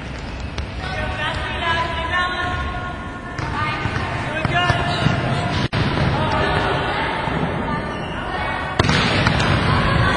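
Volleyballs being hit, dug and set back and forth in a pepper drill in a gym, with players' voices overlapping in the background.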